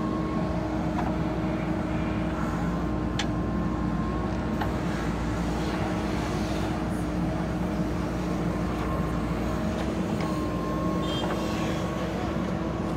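JCB backhoe loader's diesel engine running steadily under load while the rear digging arm scoops soil and swings it over a tipper truck, with a few short sharp clicks along the way.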